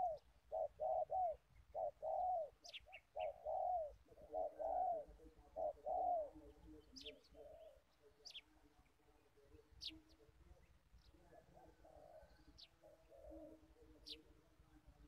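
A dove cooing in quick clusters of short notes that rise and fall, loud through the first half and fainter after. A few brief, thin, high chirps from small birds come over it.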